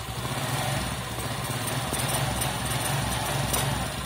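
Suzuki Skywave scooter's single-cylinder four-stroke engine idling steadily on a newly fitted Satria FU-type carburetor. The idle is full and even, without roughness, catching or stalling.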